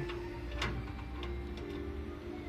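Faint background music with a single sharp metallic click a little over half a second in: the stainless-steel stirrer shaft being handled as it is fitted into its clamp on the cheese vat.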